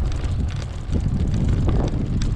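Wind buffeting the camera microphone while riding a bicycle: a steady low rumble, with scattered light ticks and rattles over it.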